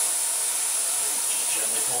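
Airbrush spraying paint: a steady, loud hiss of air and paint that starts suddenly as the trigger is pressed and pulled back.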